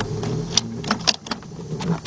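Sharp plastic clicks and rattles of an ignition coil's wiring connector being unplugged and a test-lead clip being handled among the engine-bay wiring, over a low steady hum that fades about two-thirds of the way in.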